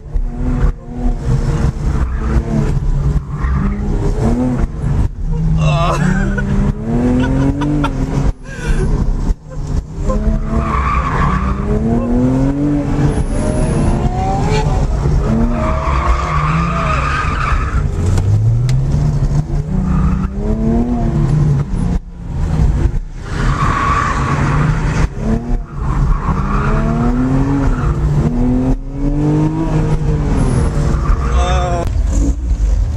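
Ford Mustang 5.0 V8 heard from inside the cabin while driven hard through a cone course: the engine revs rise and fall over and over, and the tires squeal in the turns, a few times through the run.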